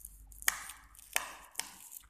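Three sharp snaps of a stiff paper card being flexed and handled in the fingers, the first about half a second in.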